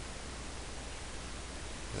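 Steady hiss of recording background noise with a low hum underneath, unchanging throughout.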